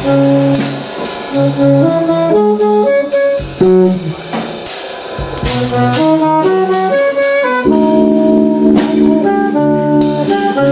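Live jazz trio: an alto saxophone plays a line of quick notes over electric keyboard and a drum kit with cymbals. About three-quarters of the way in, notes are held over a sustained chord.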